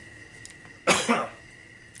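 A man coughs once, a single short cough about a second in.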